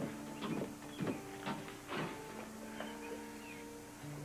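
Soft background score of held, sustained chords that change about two seconds in, with a few short scuffing sounds in the first half.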